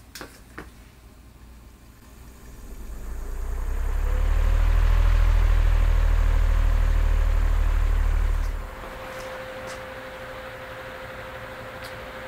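A pedestal fan converted to direct DC power is switched on with a couple of clicks and spins up: a humming tone rises and settles at a steady pitch over the rush of moving air. For several seconds the fan's draft buffets the microphone with a heavy low rumble, the loudest sound here, which cuts off suddenly about three-quarters of the way through while the fan runs on steadily.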